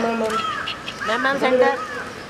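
People's voices calling out without clear words.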